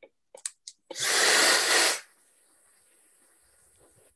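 Hair dryer switched on: a loud even rush of air for about a second, then an abrupt drop to a faint high hiss. A few light clicks come just before it starts.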